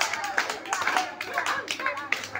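Scattered hand clapping from an audience, several uneven claps a second, with voices talking underneath.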